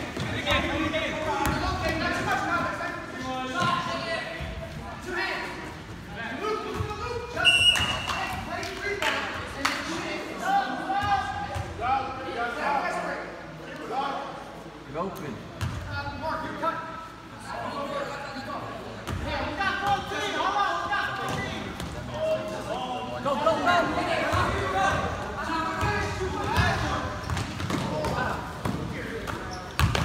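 Indistinct voices of players and spectators echoing in a gym, over a basketball being dribbled on the court floor. A brief high tone sounds about seven and a half seconds in.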